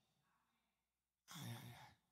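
Near silence, then, a little past halfway, a short breathy exhale into a handheld microphone lasting about half a second.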